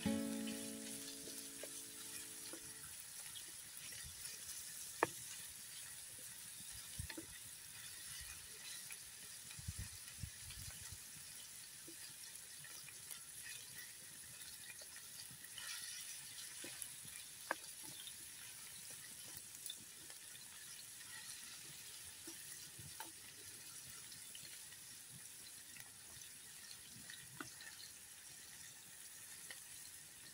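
Ground beef and chopped peppers sizzling in a pan over a campfire: a faint, steady high hiss. Occasional sharp ticks and light scrapes sound through it.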